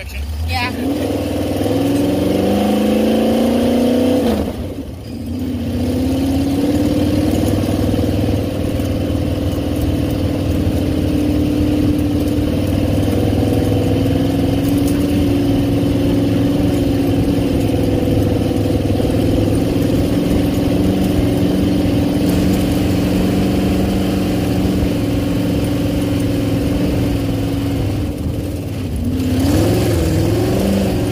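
Sand rail's engine running under load as it drives over dunes: the revs climb through the first few seconds, drop briefly about four seconds in, then hold steady, with another dip and a rise near the end.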